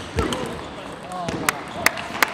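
Table tennis ball clicking sharply off bats, table or floor as a rally ends, a few separate clicks, with voices calling out.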